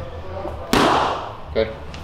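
A boxing-glove punch landing once on a padded body protector worn on the chest: one sharp smack about two-thirds of a second in, dying away quickly.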